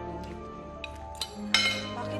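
Spoons and forks clinking against dinner plates, a few separate sharp clinks with the loudest about one and a half seconds in, over sustained background music.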